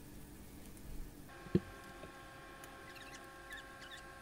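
Faint bubbling of a pot of broth at a rolling boil, with a single soft knock about a second and a half in. A steady hum made of several tones comes in just before the knock.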